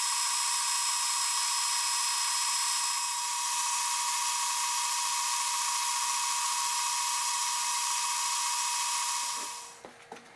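Metal lathe turning brass stock, a steady high whine over the hiss of the cut, with a slight change in sound about three seconds in. The whine dies away near the end and is followed by a few light clicks.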